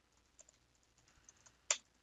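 Computer keyboard typing: a string of light key clicks, with one louder key strike near the end.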